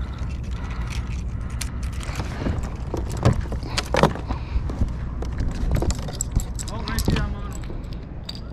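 Steady wind rumble on the microphone, with scattered light clicks and knocks from handling a fishing rod, reel and paddle aboard a kayak.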